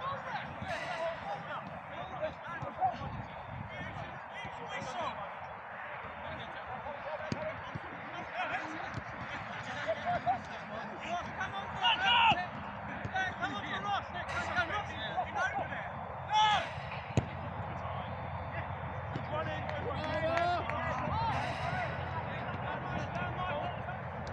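Shouts and calls of footballers across outdoor pitches, mostly distant, with occasional thuds of a football being kicked. A few louder shouts stand out about halfway through.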